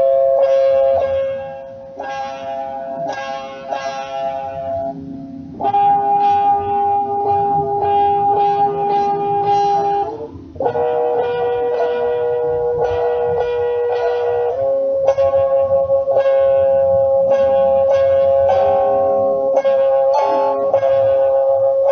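A plucked string instrument playing repeated picked notes over ringing chords. The notes change chord a few times, and the playing briefly drops away about two seconds in and again about ten seconds in.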